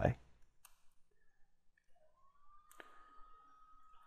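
A single computer mouse click about three-quarters of the way through, against near silence. A faint, steady high tone comes in shortly before the click.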